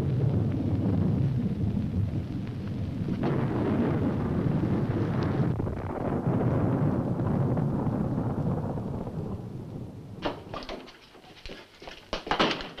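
A deep, noisy rumbling roar that slowly fades away about ten seconds in, followed by a few sharp knocks and clicks near the end.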